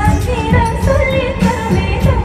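Live concert music heard over a stadium PA from the stands: a woman sings a wavering melody over a band with heavy bass and a steady beat.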